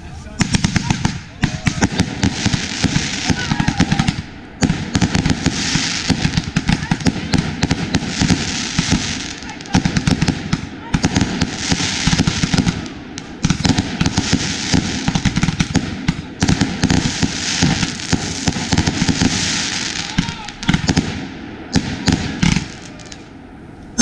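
Consumer aerial fireworks cake firing a rapid, loud barrage of launches and bursts, with a few short pauses every few seconds, stopping a couple of seconds before the end.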